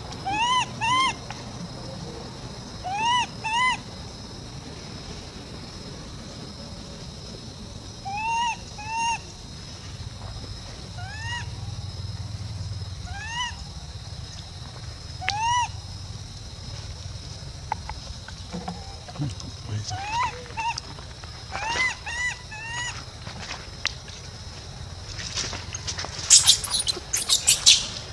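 Infant long-tailed macaque calling with short rise-and-fall whimpering coos, mostly in pairs every couple of seconds, then screaming loudly near the end.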